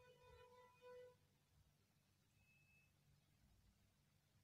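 Near silence: room tone, with a faint pitched sound in two parts during the first second.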